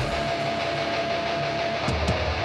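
Crustgrind / thrash punk recording: distorted electric guitar playing on its own with a held high note ringing through, the bass and drums dropped out, and a couple of sharp drum hits near the end.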